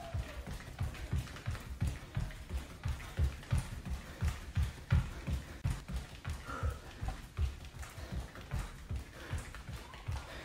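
Bare feet thudding on the floor in a quick, steady rhythm of about three steps a second, running in place with high knees.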